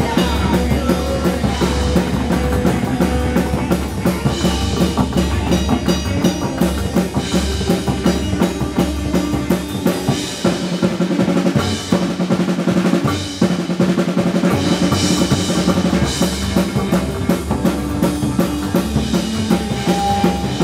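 A live psychobilly band playing: electric guitar, upright double bass and a drum kit driving a steady beat. The deep bass end drops away for a few seconds around the middle, then returns.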